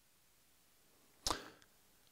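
Near silence in a pause of speech, broken about a second in by a short, quick in-breath at close microphone range.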